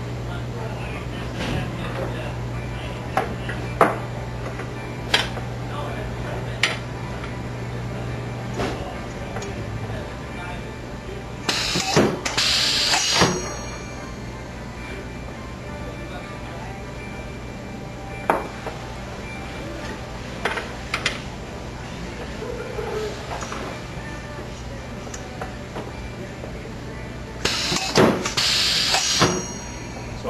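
All-pneumatic band-installing press cycling twice, each stroke a hiss of air about two seconds long, about twelve seconds in and again near the end. Between strokes, sharp clinks of steel bearings and parts being handled.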